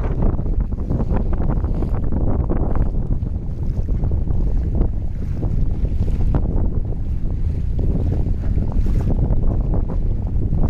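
Wind buffeting the microphone over the steady low rumble of a rescue boat moving across floodwater.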